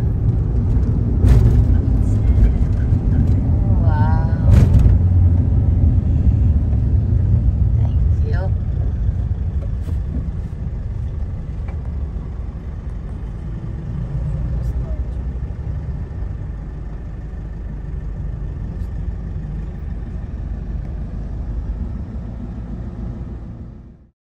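Steady low rumble of road and engine noise inside a moving passenger van's cabin, with brief voices and a couple of sharp knocks in the first few seconds. The sound cuts off abruptly at the end.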